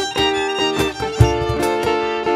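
Live acoustic folk-ensemble music: a violin plays the melody over acoustic guitar, with a couple of low percussion strokes about a second apart.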